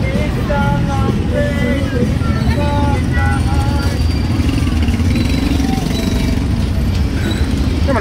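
Busy street traffic: a steady engine rumble from tricycles and cars running close by, with people's voices in the first few seconds.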